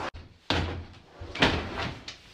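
Two heavy thuds about a second apart as a free-standing punching dummy on a weighted plastic base topples over and hits a wooden floor.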